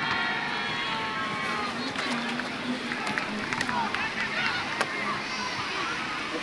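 Several people talking at once as a team gathers into a huddle, with music underneath.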